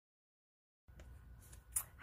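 Dead silence, then faint room tone starting a little under a second in, with a soft click and a brief swish shortly before speech begins.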